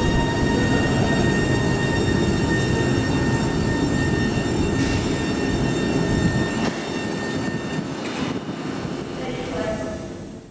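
Northern Class 331 electric multiple unit moving slowly along the platform, its traction equipment whining with several steady high tones over a low rumble. The rumble eases about seven seconds in, and the sound fades out at the very end.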